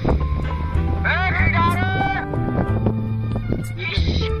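Music: a Bangla song, with a voice singing over instrumental backing that has a steady bass line.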